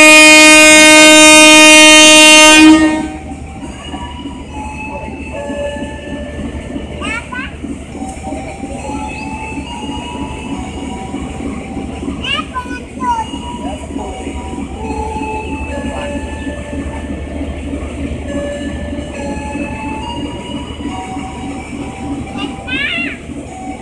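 Train horn sounding one long, loud blast lasting about three seconds. It is followed by the steady low rumble of the diesel locomotive as the passenger train starts to pull away from the platform.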